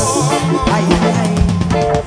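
Live reggae band playing, with the drum kit to the fore: bass drum and snare or rimshot hits over guitar and bass. A held sung note with vibrato trails off in the first half-second.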